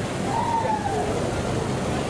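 Steady rushing seaside ambience, with a faint distant voice about half a second in.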